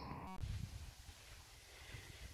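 Faint outdoor ambience with an uneven low rumble of wind on the microphone, after a brief break in the sound about a third of a second in.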